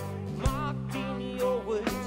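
A rock band playing live: electric guitar with a wavering melody line over sustained bass notes, and sharp drum hits about half a second in and near the end.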